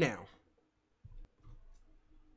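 A few faint computer-mouse clicks, about a second in and again around a second and a half, as the screen is switched to another browser tab. A man's voice ends a word just at the start.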